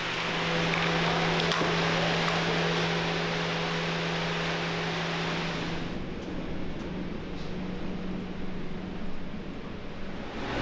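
Steady machine-shop noise: machinery and ventilation running with a low, steady hum. About six seconds in it gives way to a quieter room tone with a lower hum and a few faint ticks.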